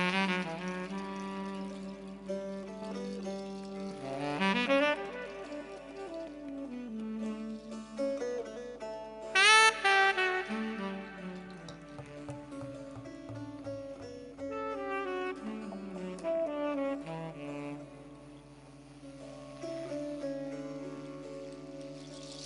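Tenor saxophone playing a slow, improvised melodic solo of long held notes over sustained lower tones. About nine and a half seconds in comes its loudest phrase, a bright note scooped upward in pitch.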